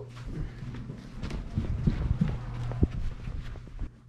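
Footsteps while walking, with irregular low thumps, rustling and a few sharp clicks as clothing rubs and knocks against a belt-mounted action camera.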